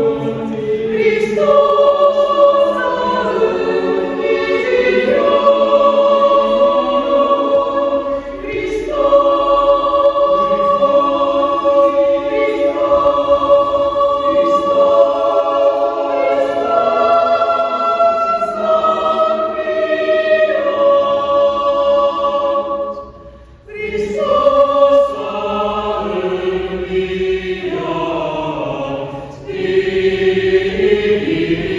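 Mixed choir singing a sacred choral piece unaccompanied, in long held chords phrase after phrase. The voices break off briefly about three quarters of the way through, and again just before the end, before a new phrase begins.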